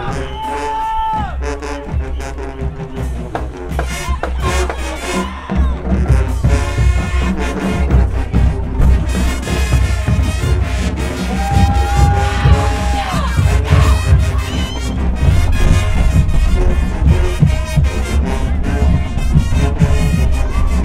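High school marching band playing, with trumpets, saxophones and sousaphones; the bass and overall volume fill in about six seconds in.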